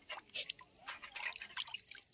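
Faint splashing and dripping of water as small fish are rubbed and rinsed by hand in a metal basin.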